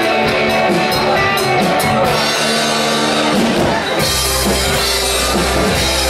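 Live rock band of electric guitars, bass guitar and drum kit playing. About two seconds in the cymbals and bass drop out, and about four seconds in the full band comes back in.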